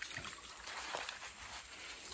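Faint, steady trickle of a shallow stream running over a muddy bed.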